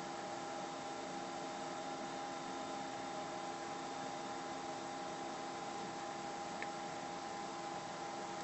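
Steady low room tone: an even hiss with a faint constant hum, and a single tiny click near the end.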